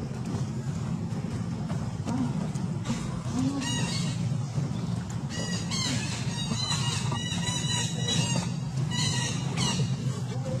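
Bursts of rapid, high-pitched, chirping animal calls, starting a few seconds in and coming in quick clusters, over a steady low hum.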